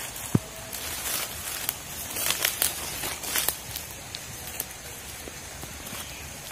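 Footsteps through dry fallen leaves and twigs on a forest floor, the leaf litter rustling and crackling underfoot in short irregular bursts. A single sharp click just after the start is the loudest sound.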